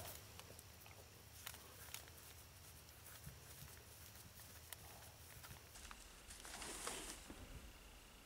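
Near silence, with faint small ticks and a soft rustle of hands working synthetic fur and yarn, the rustle rising a little about six and a half seconds in.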